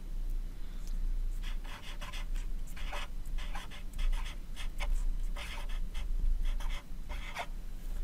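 Blue wax crayon writing a word on paper: a run of short, scratchy strokes with brief gaps between letters, over a steady low hum.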